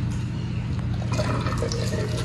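Melted butter sizzling steadily in a hot frying pan on a gas stove, over a steady low hum, with a few faint ticks from about a second in.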